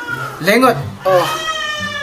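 Speech only: a man talking in two phrases, the second one drawn out, his voice rising and falling in pitch.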